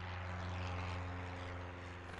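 Piston engines of a four-engine propeller aircraft droning steadily: a low hum with a hiss over it.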